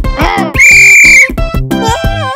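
A referee's whistle blown once in a steady, shrill blast lasting under a second, starting about half a second in, over cartoon background music.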